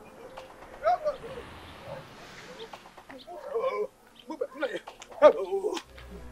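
Domestic chickens clucking in short, scattered bursts, loudest about five seconds in.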